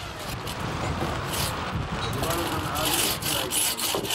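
Hand saw cutting through a wooden timber in repeated rasping strokes, the strokes coming faster in the second half.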